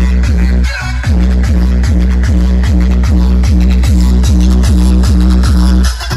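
Loud electronic dance music played by a DJ over a large sound system. A heavy bass beat repeats about three times a second, and the bass drops out briefly just under a second in.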